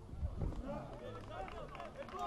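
Football players calling and shouting to each other across the pitch during play, several distant voices overlapping, over outdoor ambience.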